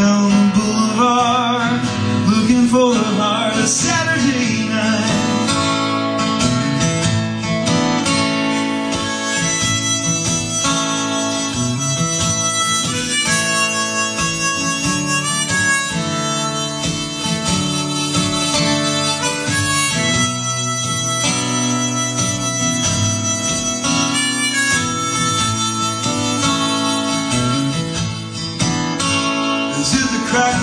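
Harmonica instrumental break, played from a neck rack, over steadily strummed acoustic guitar.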